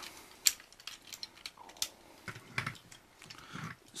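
Plastic parts of a Transformers Sentinel Prime toy figure clicking and knocking as they are handled and moved into place: a few sharp clicks spaced unevenly, the sharpest about half a second in.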